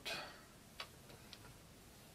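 A few faint, small clicks in a quiet room: one sharper click less than a second in, then two lighter ticks.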